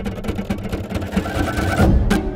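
Trailer sound design: a rapid, steady run of percussive ticks that grows denser and louder, building to a heavy low hit near the end.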